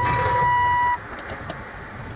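A steady, high electronic beep on one pitch, over a low hum, cutting off sharply about a second in.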